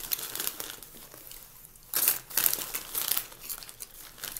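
Rapid crinkling and crackling rustle close to the microphone, with no speech, growing louder about halfway through.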